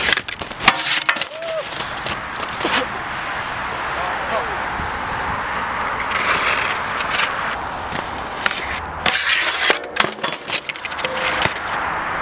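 Skis knocking and scraping on a steel handrail and a skier falling in the snow, with several sharp clattering knocks near the end, mixed with people's voices.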